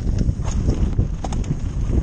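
Downhill mountain bike clattering over a rough trail: tyres on dirt and rock, with the chain and frame rattling in many small, irregular knocks over a heavy rumble of wind on the microphone.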